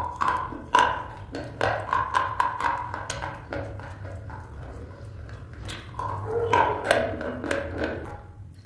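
Close-miked biting and chewing of a slate pencil: irregular sharp snaps and crunches, denser about six seconds in, over a steady low hum.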